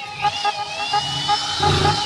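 Electric drill motor running with a high whine; its pitch dips just after the start as it takes load, then picks back up.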